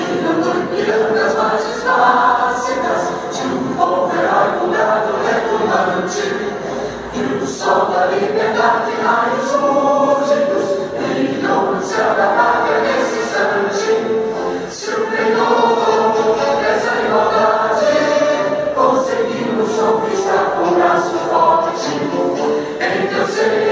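An anthem sung in chorus by a large group of voices, with music, continuing steadily.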